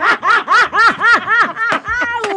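A woman laughing: a long unbroken run of quick 'ha' pulses, about five a second.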